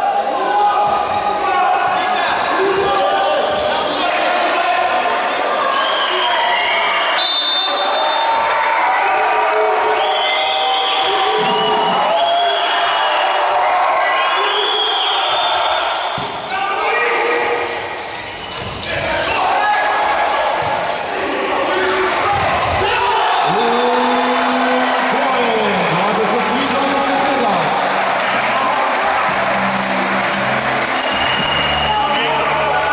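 Indoor volleyball rally: ball strikes and players' shoes squeaking on the court floor, with shouting voices in a large hall.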